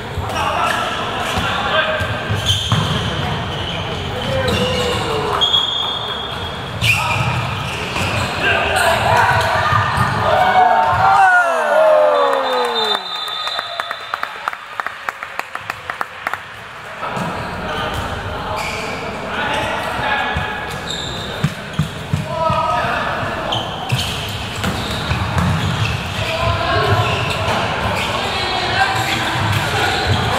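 A handball bouncing on an indoor court amid shouting voices, echoing in a sports hall. About a third of the way in, the voices drop away for several seconds and the ball's bounces stand out as a run of sharp knocks.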